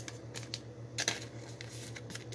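A Pokémon card being slid into a plastic card sleeve: a handful of light clicks and rustles of plastic, over a steady low hum.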